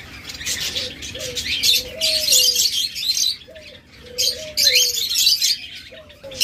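Caged doves cooing in low, drawn-out notes that rise and fall, over a steady chatter of high chirps from small cage birds.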